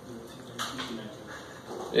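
Faint, low voices of people talking quietly in a classroom, in short broken phrases.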